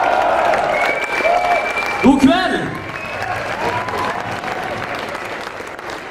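Concert crowd applauding and cheering after a metal song ends, with whoops and shouts over the clapping and one loud shout about two seconds in. The applause slowly fades out near the end.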